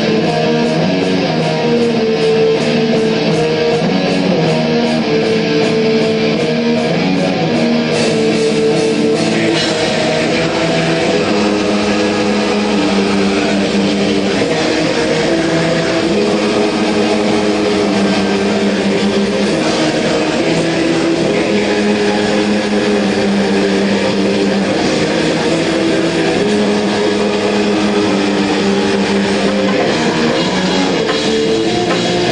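Live metal band playing: electric guitars holding slow, heavy chords over bass, recorded loud with a dense, saturated sound. The sound grows fuller about eight seconds in.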